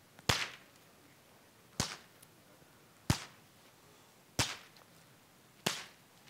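A rusty steel sphere and an aluminium-foil-covered steel sphere struck hard together five times, about once every 1.3 seconds, each blow a sharp crack. Each strike smashes rust against aluminium fast enough to set off a small thermite reaction.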